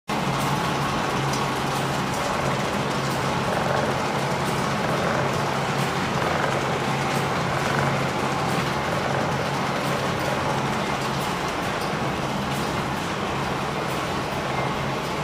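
Paper printing press running steadily, drawing a paper web off a roll through its rollers: a continuous mechanical noise with a steady low hum and faint light clicks.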